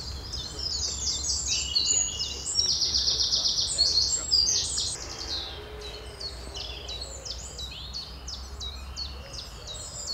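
Several small songbirds singing over one another in woodland, with a fast, even trill standing out between about two and four seconds in, after which the singing is quieter; a faint steady low rumble runs underneath.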